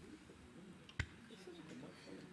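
A single sharp click about a second in, over faint, indistinct voices in a meeting room.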